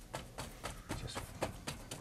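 A bristle brush tapping and pushing against a stretched painting canvas as a leaf tree is formed: a quick, uneven run of dry taps, several a second.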